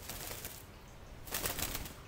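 A toucan flapping its wings as it jumps down off a person's arm: a short rustle at the start, then a louder flurry of wingbeats about a second and a half in.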